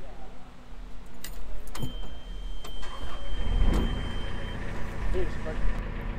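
A narrowboat's diesel engine being started. A few clicks and knocks, then a steady high beep of about three seconds, and about three seconds in the engine catches into a steady low idle.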